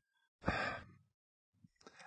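A man's single short, audible breath, about half a second long, a little under half a second in.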